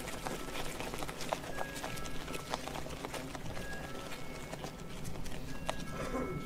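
Irregular scattered clicks and taps over a steady outdoor background noise, with a few brief high whistle-like tones.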